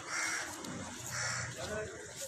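A bird calling twice, short calls about a second apart.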